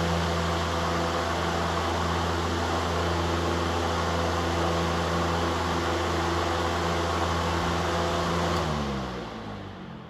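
TPI F-18-TE 18-inch high-velocity fan, with a sleeve-bearing motor, running steadily with a motor hum and rushing air. Near the end it is switched off and its pitch and loudness fall away quickly as it spins down. The short spin-down is put down to the motor's new sleeve bearings, which still need to break in.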